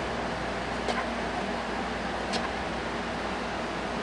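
Steady background hiss with two faint clicks about a second and a half apart: the sewing machine's needle mechanism ticking as its handwheel is turned slowly by hand.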